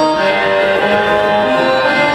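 Live band music played through a venue's PA, with long held notes.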